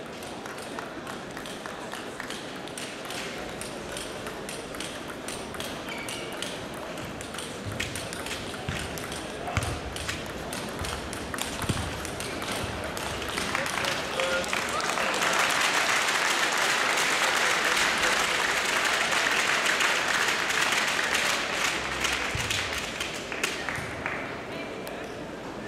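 Table tennis balls clicking off bats and tables, irregular and overlapping from play on several tables. About halfway through, applause breaks out and runs for about ten seconds, the loudest sound here.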